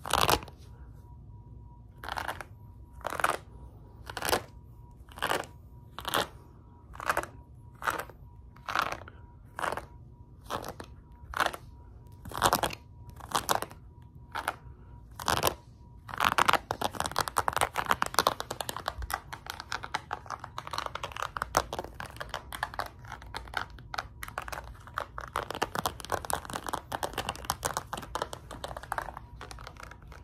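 Fabric crunched and scratched by hand close to the microphone. It starts as separate crisp strokes a little over one a second, then about halfway through turns to fast, continuous scratching. A faint steady high tone runs underneath.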